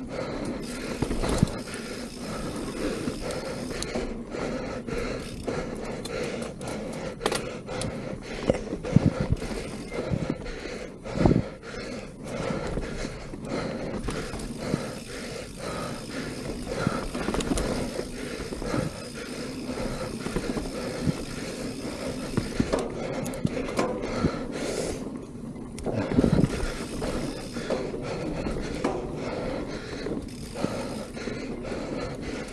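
Mountain bike descending a dirt singletrack at speed: steady rolling noise from the tyres, with constant rattle and clatter from the bike over bumps. Sharper knocks from harder hits come several times, the loudest about 11 seconds in.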